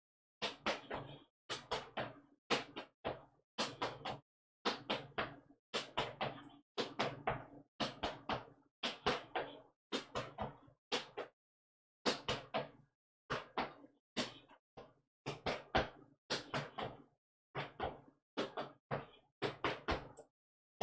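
Clogging footwork: shoes striking a bare concrete floor in a quick, steady run of sharp taps grouped in twos and threes, the double-toe step danced over and over, with a brief pause about halfway.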